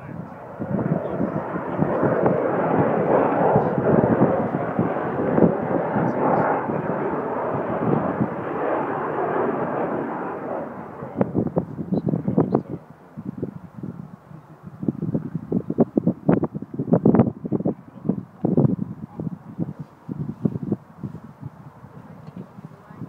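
Avro Vulcan bomber's four Rolls-Royce Olympus turbojets passing low: a loud, steady jet rush that builds and holds for about ten seconds, then breaks up into uneven, gusting rumbles as the aircraft draws away.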